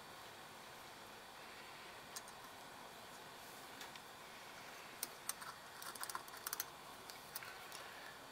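Small sharp clicks of a new carbon brush and its spring being worked by hand into a plastic alternator brush holder. There is a single click about two seconds in, then a scattered run of clicks over the last three seconds, over a faint steady hiss.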